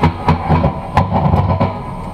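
Rock band playing: electric guitar over bass and sharp drum hits.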